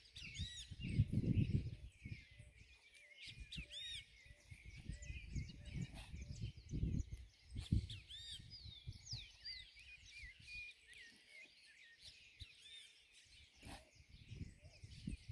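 Small birds chirping and calling busily in the background, many short rising-and-falling notes. Uneven low rumbling comes and goes beneath them.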